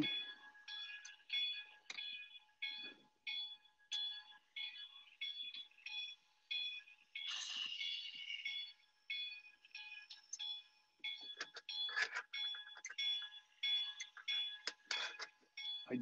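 A quick, uneven series of short, high electronic beeps, all at one pitch, over a faint steady tone.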